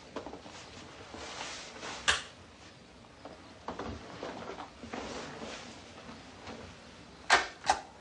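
Quiet rustling and shuffling movement with one sharp click about two seconds in, then two sharp mechanical clicks close together near the end, from the keys of a video recorder being pressed to start playback.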